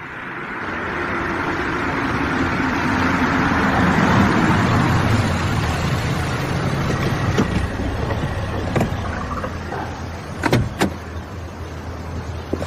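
A car on a wet street: tyre hiss swells over the first few seconds and then eases, leaving a steady low engine rumble. Near the end come two sharp clicks, a car door opening.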